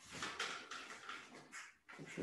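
Noisy rustling and shuffling from a person moving about in a cotton karate gi, starting abruptly and going on in uneven pulses.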